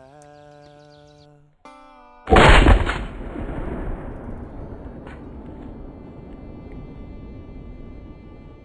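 A held, steady musical tone, then about two seconds in a single very loud gunshot-like boom that dies away slowly over the following several seconds.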